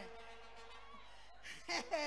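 A quiet pause with a faint, steady, thin hum that fades after about a second, then a short spoken word near the end.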